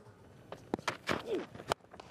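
Faint field-side ambience with a few light clicks, then a sharp crack near the end: a cricket bat striking the ball in a big straight hit.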